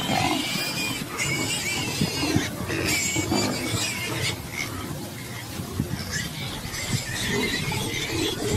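A warthog squealing in distress, repeated high, wavering cries, while a leopard holds it by the head and neck, with short scuffling thuds underneath.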